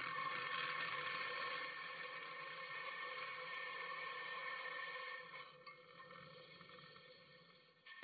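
Faint steady hum made of several fixed tones over a light hiss. It drops away about five seconds in and fades out.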